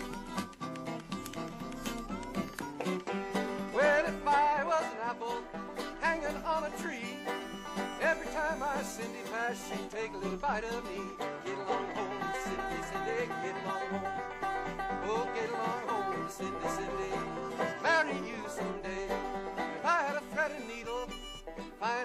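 Instrumental folk music, a banjo and guitar picking together, with a melody line above that bends and wavers in pitch.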